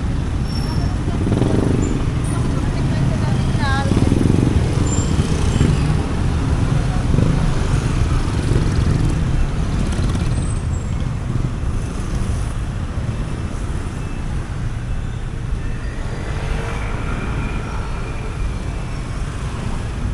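Busy road traffic: motorcycle-sidecar tricycles and cars running past, with a continuous engine and tyre rumble.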